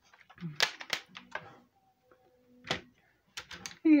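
Sharp plastic clicks and clatters from a clear plastic pencil box of markers being handled, opened and set down on a desk: a handful of separate clicks spread through the seconds.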